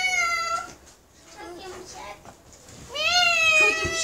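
A cat meowing: two long, high, drawn-out meows, the first tailing off just after the start and the second beginning near the end.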